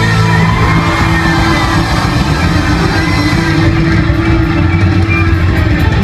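Live rock band playing loudly: drum kit, bass guitar and electric guitar, with held notes and bending guitar lines.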